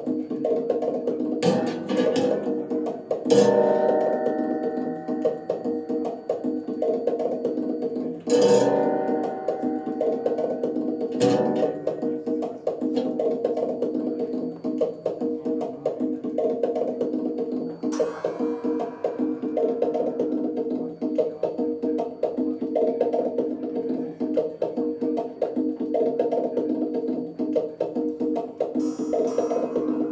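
Live improvised music: a dense plucked-string drone, fast and repeating, broken by sharp struck hits every few seconds. The loudest hits come about three seconds in and about eight seconds in.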